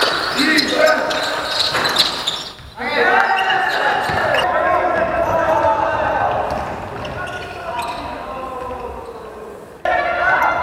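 Indoor basketball game sounds in a large hall: a ball bouncing on the court and players' voices echoing. The sound drops out briefly about a third of the way in and again near the end, where the footage cuts between games.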